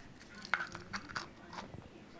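A few faint, short clicks and handling noises from a small plastic toy capsule being turned and twisted in a child's hands.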